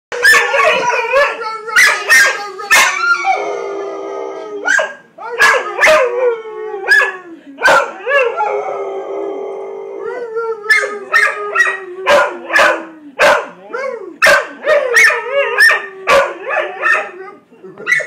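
A dog barking and howling in quick alternation: a string of sharp barks and yelps, broken by two drawn-out howls about four and nine seconds in.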